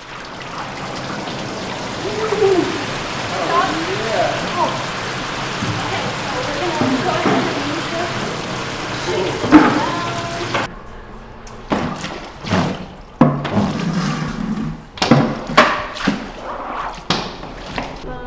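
Paper pulp and water pouring from buckets onto a large papermaking mould and draining through its screen into a vat: a steady rushing of water that cuts off abruptly about ten and a half seconds in. After it come scattered knocks and clinks.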